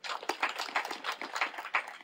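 Audience applauding: a few seconds of dense, rapid clapping that dies away near the end.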